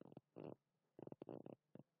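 A person's voice murmuring quietly in several short, low bursts, like mumbling under the breath.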